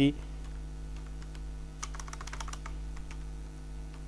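Computer keyboard being typed on: a quick run of key clicks about two seconds in, with a few fainter clicks after, over a steady low electrical hum.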